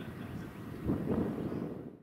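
Faint low background rumble, like wind or distant ambient noise, with a muffled bump about a second in, fading out at the end.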